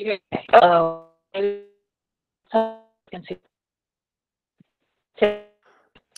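A voice breaking up over a failing video-call connection: a handful of short, clipped fragments, each stuck on a held, buzzing pitch that dies away, with dead silence between them.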